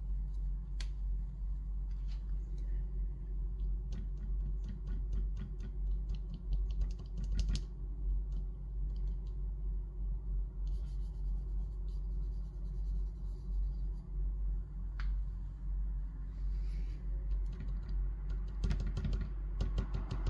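Kneaded eraser tapped and dabbed against charcoal-covered sketchbook paper: clusters of light, quick clicks, over a steady low hum.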